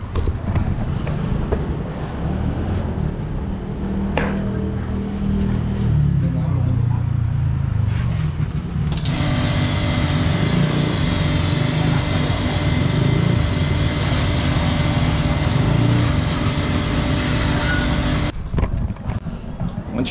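Hose spraying rinse water onto a scooter: a low rumble with a few knocks for the first nine seconds or so, then a loud, even hiss of spray with a steady hum under it, which cuts off suddenly near the end.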